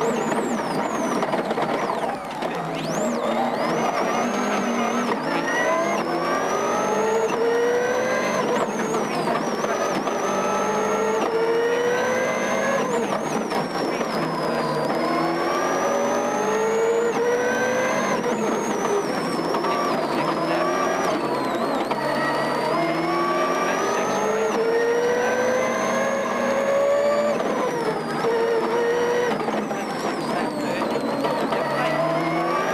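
Subaru rally car's turbocharged flat-four engine heard from inside the cabin, revving hard and climbing in pitch through each gear. The pitch drops sharply at every upshift, every few seconds.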